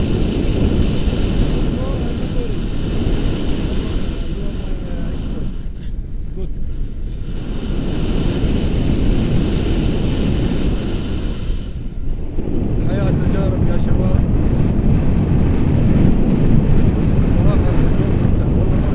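Wind buffeting the camera microphone in paraglider flight: a loud, steady rumble that dips twice, about six seconds in and again near twelve seconds.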